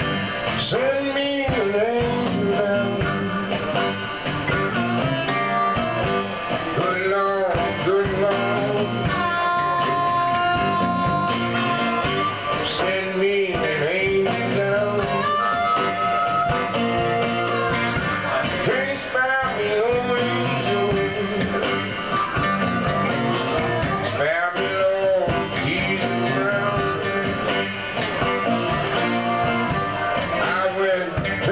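Live blues band playing: a harmonica lead with bent and long-held notes over acoustic and electric guitars and drums.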